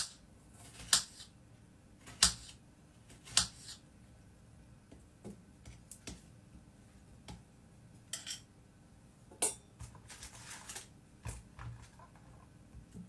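Kitchen knife chopping strawberries on a chopping board: about ten sharp, unevenly spaced knocks of the blade striking the board.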